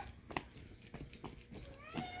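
A domestic cat meowing to be fed: one long meow ends at the very start, and another rising meow begins near the end. In between there are a few faint clicks.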